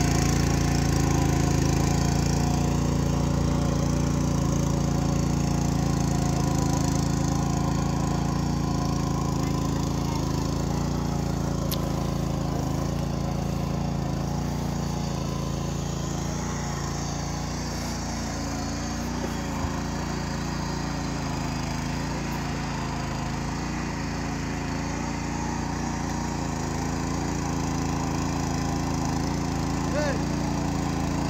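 A 7.5 hp walk-behind power weeder's engine running steadily under load as its tines work through a paddy field. It is a little quieter in the middle, as the machine moves farther off.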